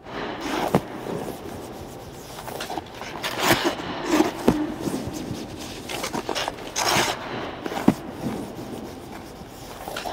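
Goalie leg pads sliding and scraping on ice as a goaltender knee-shuffles side to side in the butterfly. There are bursts of scraping about a second in, around three to four seconds and around seven seconds, as each shuffle stops sharply, with a few light knocks in between.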